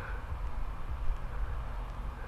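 Steady low background rumble with no distinct sound event.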